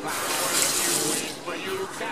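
Water running from a sink tap as someone washes their face, a steady hiss.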